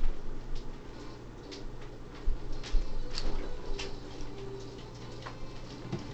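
Scattered light clicks and small knocks of things being handled in a kitchen, over a steady low hum.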